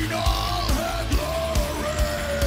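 Live pop-rock band playing with a steady drum beat under a male lead vocal, which holds a long, slightly falling note in the second half.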